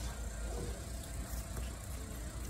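Low steady rumble with a faint hum: store background noise picked up by a handheld phone.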